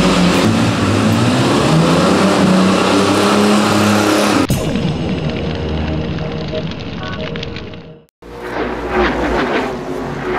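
A car engine revving with its rear tyres spinning in a burnout, over music, for about the first four and a half seconds. The car sound then gives way to music, which cuts out briefly just after eight seconds and comes back with a beat.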